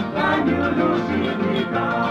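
Papua New Guinea stringband music from Manus: a song played on plucked acoustic guitars over a steady pulsing bass.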